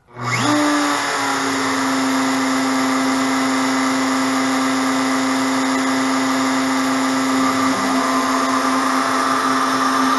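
DeWalt compact router on a CNC machine switched on: it spins up within about half a second and settles into a steady whine at full speed.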